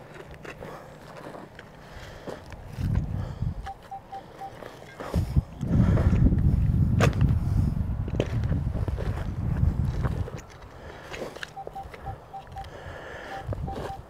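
Spade digging and scraping in dry, stubbly field soil, loudest for about five seconds in the middle with a sharp knock in it. A faint, rapid electronic beeping from the metal detector sounds briefly a few seconds in and again near the end as the target is checked.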